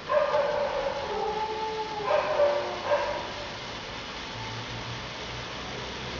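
A ground fountain firework spraying sparks with a steady hiss. Over the first three seconds, several drawn-out, wavering high calls sound above it, then only the hiss remains.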